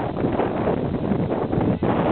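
Wind buffeting the camera's microphone: a steady, loud rumbling hiss.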